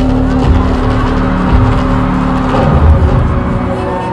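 Live band playing a loud synth-driven instrumental in an arena, with a heavy low bass and a held synth note that breaks off about two and a half seconds in.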